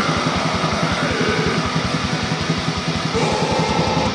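Black metal song playing: distorted electric guitars over fast, steady, rapid-fire drumming.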